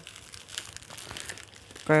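Clear plastic packaging around a small lamp crinkling and rustling as it is handled and unwrapped, in faint irregular crackles.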